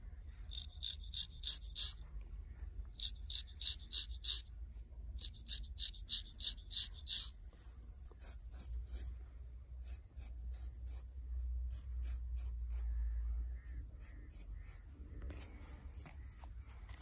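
Straight razor scraping wet hair off the scalp in quick, short strokes, several a second. The strokes come in three close runs in the first seven seconds, then grow sparser, over a steady low rumble.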